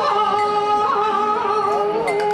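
A woman's voice singing a Spanish folk song, holding one long note steady with slight wavering, over a folk string ensemble of guitars and bandurrias.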